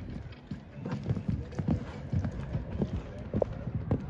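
Hoofbeats of a horse cantering on a sand arena footing: a run of dull, uneven thuds.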